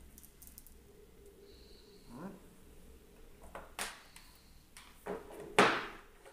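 Rustling and handling noise close to the microphone as a person leans in and handles a laptop charger and its cable. There are a few short bursts, the loudest near the end, and a brief rising squeak about two seconds in.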